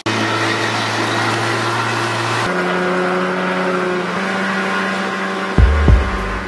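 Evinrude 60 outboard motor running steadily under way, with the rush of water, its tone shifting about two and a half seconds in. Heavy low thumps come in near the end.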